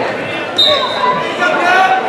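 Wrestlers thudding onto a gym wrestling mat during a takedown about half a second in, with spectators shouting and yelling in the echoing gym.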